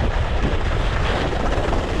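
Steady wind buffeting a moving skier's camera microphone, a loud low rumble, with the hiss of skis sliding through powder snow.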